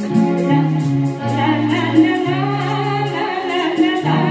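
Live band music: sung vocal lines over keyboard and electric guitar, with a steady beat.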